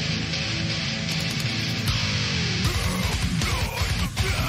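Beatdown deathcore song with heavy distorted electric guitars. A low chord rings out, then a sliding drop leads about two-thirds of the way in to a fast, low, rhythmic heavy section.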